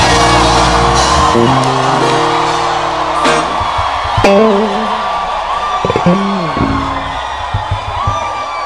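Keyboard holding sustained chords under a congregation's mass shouting, which thins out after about three seconds. Around four seconds in and again at six, a voice gives long, wavering cries over the music.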